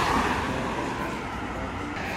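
A car passing close by: its tyre and engine noise is loudest at the start and then fades away.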